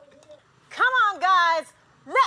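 A high-pitched voice calling out two drawn-out syllables about a second in, each rising then falling in pitch.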